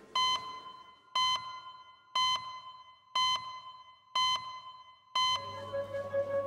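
Electronic beeping: six short beeps about a second apart, each a clear tone that fades out before the next.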